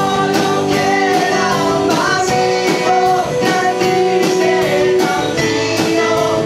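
Live band playing a rock ballad: acoustic guitar, upright double bass, drum kit and keyboard, with singing over a steady beat.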